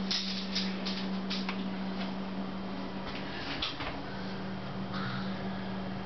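A steady low hum throughout, with faint rustles and a few soft ticks of handling.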